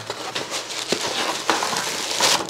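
A cardboard shipping box being opened and handled by hand: rustling of cardboard flaps and packed contents, with a few sharp clicks and knocks.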